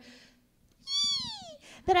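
A single high-pitched, meow-like vocal call about a second in, under a second long and falling steadily in pitch.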